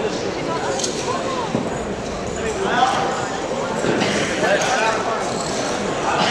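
Indistinct chatter of several people echoing in a large gymnasium, with a few sharp knocks, one about a second in and a louder one near the middle.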